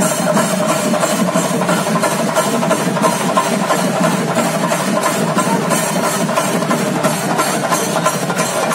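Ritual percussion of chenda drums with hand cymbals, beating a fast, steady rhythm of about three to four strokes a second.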